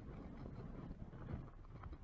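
Faint, low wind rumble on the microphone in a pause between words.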